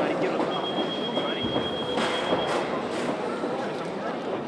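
A steady high-pitched tone held for about two seconds, the signal for the start of a round, over the murmur of a crowd in a hall.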